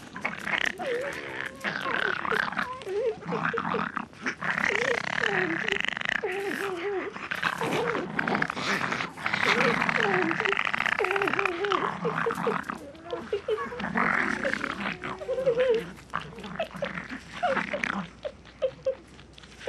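Wild animal vocalizations: a long run of short calls that waver up and down in pitch, mixed with rough, noisy sounds. They thin out near the end.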